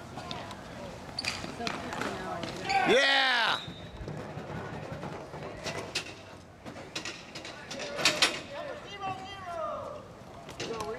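Hockey game on an outdoor sport court: scattered sharp clacks of sticks and ball against the surface and boards, with a loud shout rising in pitch about three seconds in and a couple of hard knocks a little before the end.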